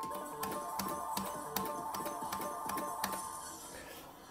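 Merkur gaming machine playing its electronic melody during the risk-ladder gamble, a steady high tone pattern over regular ticks about two to three times a second.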